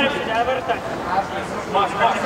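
Men's voices talking and calling out, with no other distinct sound.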